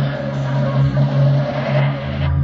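Experimental electronic music: a dense, steady drone of sustained low tones under a hissing, noisy layer, its deepest bass dropped out.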